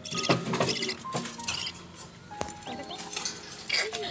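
Pet lovebirds chirping and chattering: a quick run of short, sharp, high-pitched calls and clicks.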